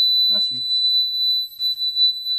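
Fibaro Z-Wave smoke detector's built-in alarm sounding one steady high-pitched tone: it has detected smoke from burning paper held beneath it.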